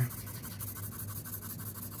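2B graphite pencil scratching across sketchbook paper in quick, repeated shading strokes.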